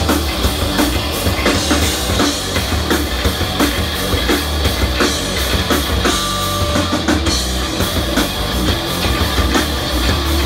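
Live rock band playing loud, heavy music: electric guitars over a steadily hit drum kit, heard through the room from the audience.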